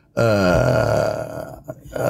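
A man's voice holding one long, drawn-out hesitation sound like "ehhh", about a second and a half long, dipping in pitch at first and then held before trailing off.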